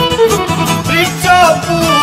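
Instrumental break in Bosnian izvorna folk music: a fiddle plays an ornamented melody with vibrato over a steady rhythmic string and bass accompaniment.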